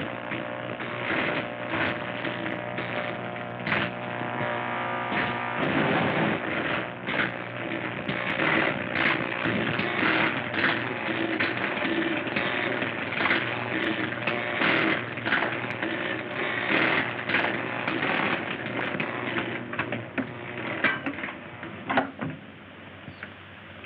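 Film sound effect of a high-voltage laboratory apparatus: a steady electrical hum under loud, irregular crackling of electric arcs and sparks. The crackling thickens about six seconds in and thins out near the end.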